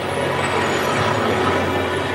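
Documentary soundtrack played over the hall's loudspeakers: a steady noisy wash with music underneath, between lines of narration.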